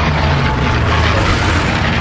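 Sound effects of a World War II propeller warplane diving in to attack: a loud, steady rush of engine and wind noise over a low rumble.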